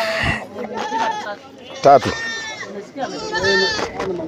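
Goats bleating, with two drawn-out, wavering calls in the second half, among people talking.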